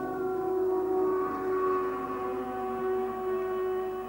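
Multi-horn electromechanical air-raid siren sounding a steady, held wail in a chord of two tones. It swells up over the first second.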